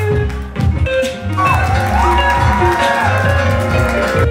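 Band music with a pulsing bass line and a melodic line over it that slides up and then holds about halfway through.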